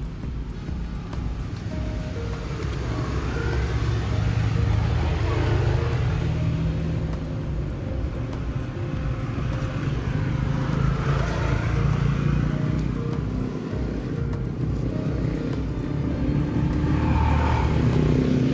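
Road traffic passing close by: vehicle engines and tyres making a steady low rumble that swells and fades as vehicles go past, loudest a few seconds in, around the middle and near the end.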